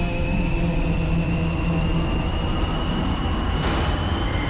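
Dramatic soundtrack sound design: a deep steady rumble under sustained drone tones, one of them slowly rising in pitch, with a swell of noise building near the end.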